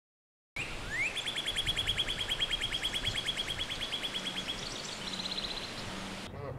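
Male northern cardinal singing: a short upward-slurred note, then a long rapid trill of repeated notes, then a shorter, faster, higher trill near the end.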